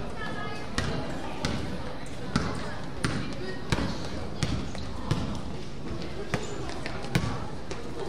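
A basketball dribbled on a gym floor, about nine bounces in a fairly even rhythm of roughly one every two-thirds of a second, over a steady background of voices.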